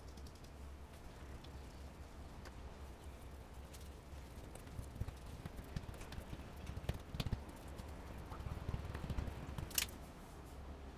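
Hands pressing and patting soft olive bread dough flat on a floured wooden table: a run of soft thumps and small taps, busiest in the second half, with one sharp click near the end. A steady low hum runs underneath.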